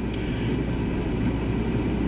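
Steady low rumble with a hum underneath: the room tone of a lecture hall, picked up through the sound system.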